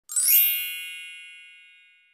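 Channel logo sting: a quick rising shimmer into a bright, high chime that rings and fades away within about a second and a half.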